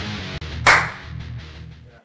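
Guitar-driven intro music with a single sharp crack about two-thirds of a second in, then fading out to silence.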